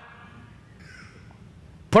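Quiet room tone in a pause in a man's speech, with a faint, short sound about a second in; his next word starts right at the end.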